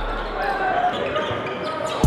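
Live gym sound from a basketball game: crowd and player voices with a ball bouncing on the court, in a short break in the backing music.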